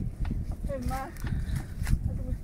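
Footsteps trudging up loose sand, with a short voice from someone in the group about halfway through.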